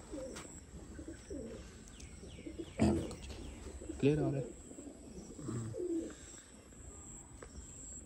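Domestic pigeons cooing: several short, low coos spread through the few seconds, with a short knock about three seconds in.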